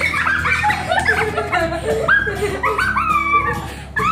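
A girl's high-pitched squealing laughter: a rapid run of short squeals, each rising and falling in pitch. Background music plays underneath.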